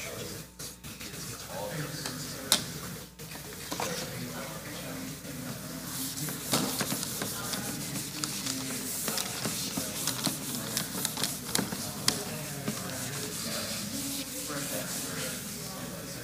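Indistinct chatter of many people talking in pairs across the room. From about six seconds in, a dry-erase eraser rubs across a whiteboard in quick scratchy strokes.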